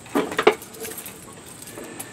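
Metal clanking and rattling from a push lawn mower's handle and frame as the mower is tipped back: a few sharp clanks in the first half second, then light rattling. The engine is not running.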